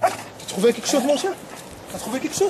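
Rescue search dog giving a few short yips and barks at the rubble, its alert that it has picked up a human scent below.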